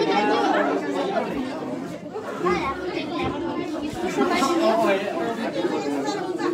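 Several people talking over one another: steady overlapping chatter from a small group, with no single voice standing out.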